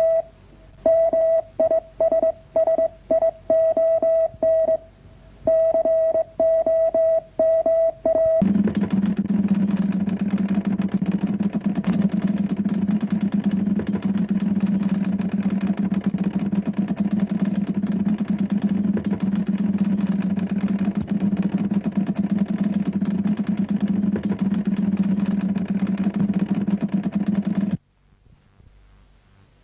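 A radio Morse code signal: a single steady beep keyed on and off in short and long pieces for about eight seconds. It gives way to a steady low drone that holds evenly and cuts off suddenly near the end.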